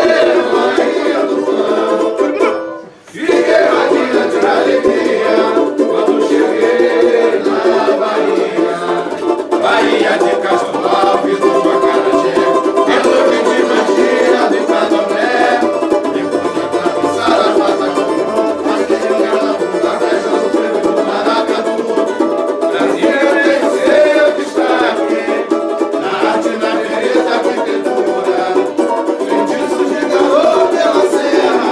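Samba played on two banjo-cavaquinhos, small four-string banjos strummed in a quick, steady rhythm, with a group singing along. There is a brief dropout about three seconds in.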